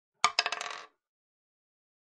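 A short clinking rattle lasting well under a second, a quick run of small clicks with a metallic ring, heard as a sound effect with the title card. Nothing else is heard.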